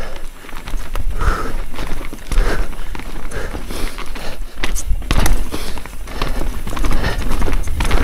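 A mountain bike rolling fast down a rough dirt trail: a steady low rumble of tyres over the ground, broken by frequent irregular knocks and clatters as the bike hits rocks and roots.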